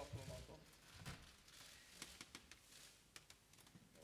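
Near silence in a quiet room, broken by faint, irregularly spaced sharp clicks of camera shutters as the players pose with the shirt.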